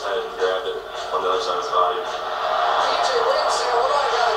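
Mostly speech: a man's voice in the audio of the NFL highlight clip being played, with the busy, television-like sound of the clip's own soundtrack under it.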